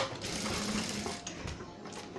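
Industrial sewing machine stitching through thick fabric-strip rug work: a sharp click at the start, then a short run of about a second that eases off.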